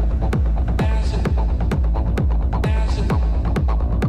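Techno DJ mix playing loud: a fast, steady kick drum with a falling thud on each beat over a constant deep bass, and a synth phrase that comes back about every two seconds.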